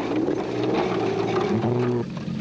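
Toyota Land Cruiser off-road race truck's engine running hard as it drives past close by, the note holding steady and then rising a little near the end.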